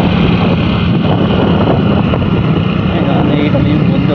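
Steady riding noise: wind rushing over the microphone mixed with the low, even hum of a small motor scooter's engine running just ahead.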